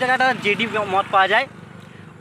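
Speech only: a man talking in a phone call, his voice stopping about a second and a half in, leaving a faint steady background.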